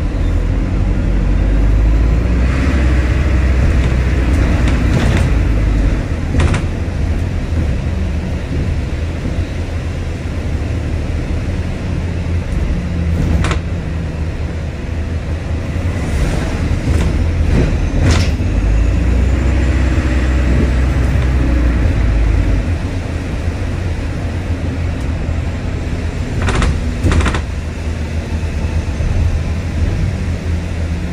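A bus engine and drivetrain running as the bus drives, heard from inside the passenger saloon: a deep rumble that swells as it accelerates over the first few seconds and again in the middle. Now and then a knock or rattle comes from the bus body.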